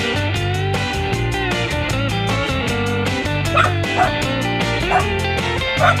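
Soundtrack music playing throughout, with a cartoon dog's short high yips, about four, in the second half.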